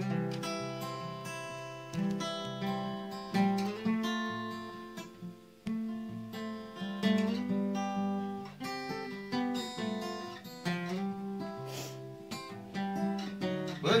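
Acoustic guitar strumming chords in a steady folk-song rhythm, the chords changing every second or two: the instrumental intro before a ballad's first verse, with a voice coming in at the very end.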